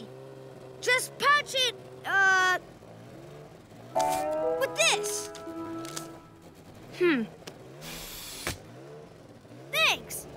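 Cartoon soundtrack of short character exclamations over background music, with a low hum that wavers up and down like a toy car's motor. A held chord of steady tones comes about four seconds in, and a brief whoosh about eight seconds in.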